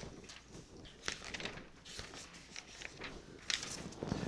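Faint scattered clicks and soft rustling of a paper notepad being handled and moved into place under a document camera.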